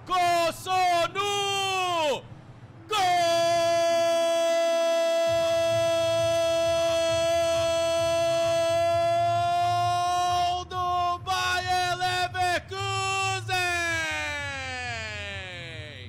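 A football commentator's goal call in Brazilian Portuguese. A few short shouted cries fall in pitch, then one long held "gol" of about seven seconds, then a run of quick shouted syllables.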